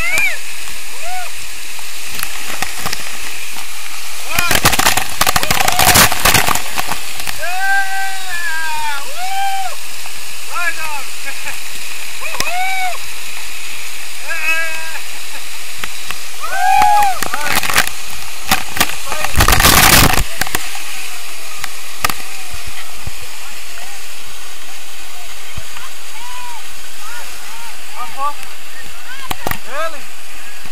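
Waterfall water pouring down onto and around the camera, a loud steady rush, with two louder surges about five seconds in and again about twenty seconds in.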